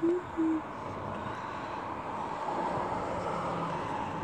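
A person humming a short, low "mm-hmm" at the start, two brief steady hums, then steady outdoor city background noise.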